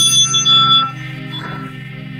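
A handheld metal chime bell rung once at the start with a bright, high ringing tone that fades within about a second, and a softer second ring about a second and a half in, over steady background music.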